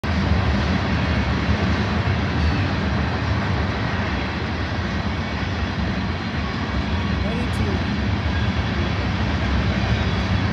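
Union Pacific manifest freight train rolling past some way off: a steady low rumble.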